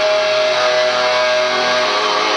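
Live metalcore band's distorted electric guitars holding a ringing chord at high volume, with one steady high tone that fades about a second and a half in. Recorded from within the crowd, so there is no deep bass.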